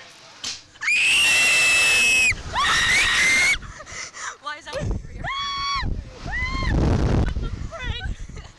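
Two young women screaming on a Slingshot reverse-bungee ride as it launches them: a long, loud, high scream starting about a second in, a second shorter one, then laughing shrieks. Near the end, wind buffets the microphone as the ride swings.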